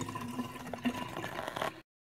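Water dripping and trickling faintly into a utility sink just after the tap is shut off, with a few small drip clicks over a faint steady hum. It cuts off suddenly near the end.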